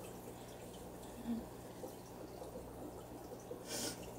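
Quiet room with a steady low electrical hum. There is a faint soft sound about a second in and a brief hissing noise just before the end.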